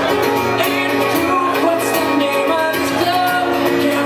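Live acoustic guitar playing with a man singing over it.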